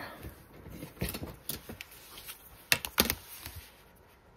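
A clear acrylic ruler being picked up and laid down on paper over a cutting mat: a few light clicks and taps of plastic, the two sharpest about three seconds in.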